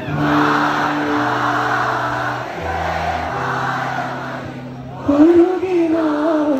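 Live band playing: held bass notes that change every second or so under a dense, noisy layer of sound, then about five seconds in a male voice comes in singing loudly into the microphone.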